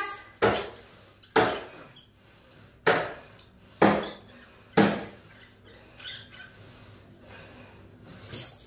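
A series of five sharp knocks, about a second apart, each ringing on briefly, followed by fainter scattered sounds.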